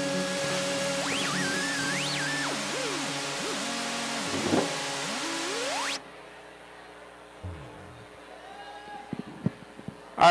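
A live trio of keyboard, electric bass and drums holds a sustained chord while one note slides up and down over it. The music cuts off abruptly about six seconds in, leaving only a few faint clicks and knocks.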